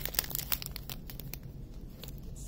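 Small clear plastic bag of teardrop rhinestone drills crinkling as it is handled in the fingers: a run of quick crackles, thick for about the first second and a half and then thinning out.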